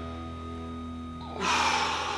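Background music with held notes. About one and a half seconds in, a man takes one strong, breathy breath lasting about half a second as he pushes up out of a sumo squat.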